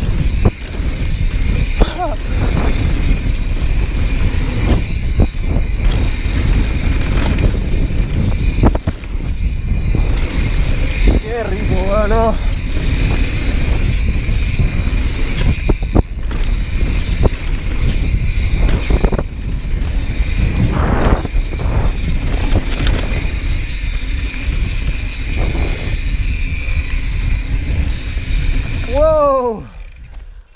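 Mountain bike descending a dirt trail at speed, heard from a camera on the rider: wind buffeting the microphone and tyres on loose dirt, with sharp knocks from the bike over bumps and a steady high buzz. The noise drops off near the end as the bike slows.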